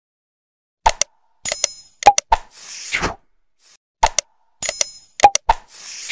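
Subscribe-button end-card sound effects: quick mouse-like clicks, a ringing bell-like ding and a swoosh. The sequence plays twice, about three seconds apart.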